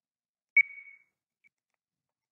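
A single high electronic ding at one steady pitch, starting sharply about half a second in and fading out within half a second, followed by a faint short blip of the same tone just under a second later.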